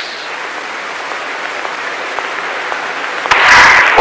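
Audience applause, steady, with a louder burst of noise near the end.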